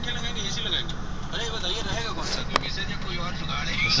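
Voices talking in the background over a steady low rumble, with a single sharp click about two and a half seconds in.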